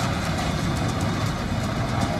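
JCB excavator's diesel engine running steadily under load as it pulls down a concrete building, mixed with the rumble of crumbling masonry.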